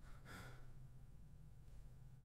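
Near silence at the faded-out end of a song: a faint low hum with one faint, short breath-like hiss about a third of a second in.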